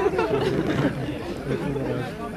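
Crowd chatter: several people talking at once close by in a standing crowd, with no single voice on a loudspeaker.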